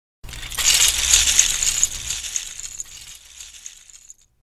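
Sound effect of a mass of plastic LEGO bricks clattering and tumbling, with a low rumble beneath. It starts suddenly, is loudest in the first two seconds, and dies away over the rest.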